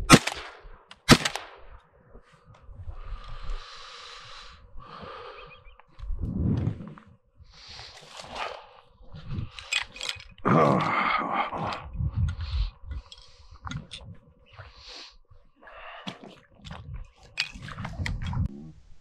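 Two shotgun shots about a second apart from a Stoeger M3000 semi-automatic shotgun, the first at the very start, with the action cycling and throwing out a spent shell. After them come irregular rustling and knocks.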